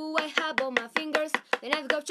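Quick, evenly spaced tapping of a knife point on a wooden tabletop, about seven taps a second: the five-finger knife game, stabbing between spread fingers. A steady held note sounds underneath.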